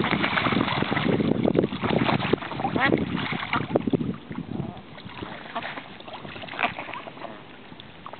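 A group of young ducks splashing and dabbling in shallow pond water. The splashing is busiest in the first two and a half seconds, then quieter.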